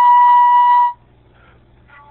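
Concert flute holding one long steady note that stops about a second in, followed by a quiet pause of about a second before the next phrase.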